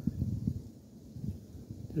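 Irregular low rumble on the microphone, with a spoken word starting right at the end.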